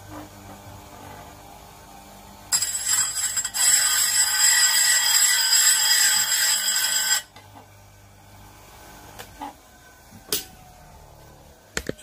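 Diamond file dressing the spinning abrasive wheel of a chainsaw chain grinder: a loud grinding for about five seconds, starting a few seconds in, over the low hum of the grinder motor. A sharp click follows later.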